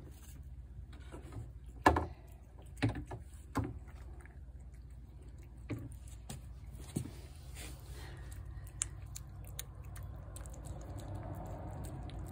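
A cat chewing shredded wet food from a ceramic plate. The chewing is quiet, and a few sharp clicks and knocks come in the first several seconds.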